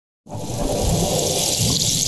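A steady rushing, water-like sound effect for an animated TV channel logo, starting about a quarter second in.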